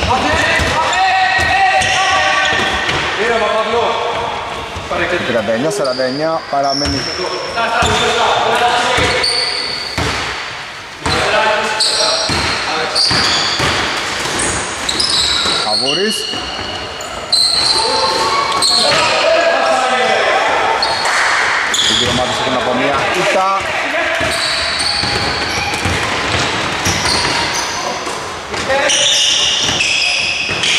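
A basketball bouncing and being dribbled on a wooden court during play, with players' shouts and calls, all echoing in a large sports hall.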